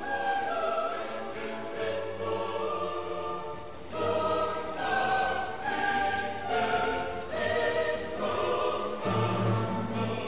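Background music: a choir singing slow, held notes that change about once a second.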